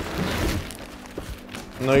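Plastic bag wrapping rustling and a cardboard box being handled as a bagged motorcycle stand is pulled out of the carton, louder in the first half-second.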